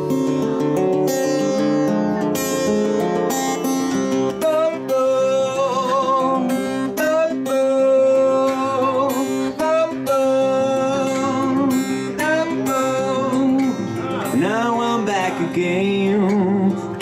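Acoustic guitar strummed in a steady rhythm, live. A man's singing voice joins about four seconds in, holding long notes over the chords.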